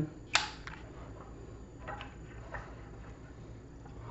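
A small table lamp's switch being clicked: one sharp click about a third of a second in, then a few fainter clicks and handling knocks near two seconds in. The lamp stays dark because it is unplugged.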